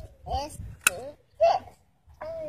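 Three brief high-pitched vocal sounds with gaps between them, and a single sharp click a little under a second in.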